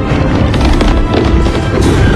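Loud film soundtrack: music mixed with a dense run of bangs and crashes from action sound effects.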